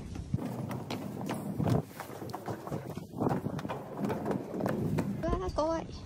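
Footsteps climbing hard outdoor stairs, an irregular run of sharp knocks, with a woman's short exclamation near the end.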